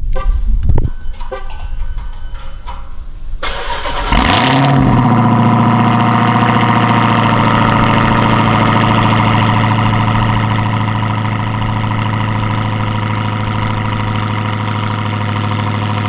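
Cold start of a Dodge Charger SRT Hellcat's supercharged 6.2-litre Hemi V8. The engine catches about four seconds in with a brief flare of revs, then settles into a loud, steady cold idle through the exhaust, easing slightly after about ten seconds.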